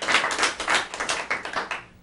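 Brief applause from a small audience: many overlapping hand claps, dying away near the end.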